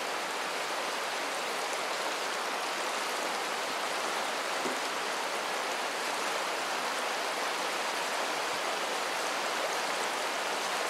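Fast, shallow river water running over and around boulders, a steady even rush with no breaks or distinct splashes.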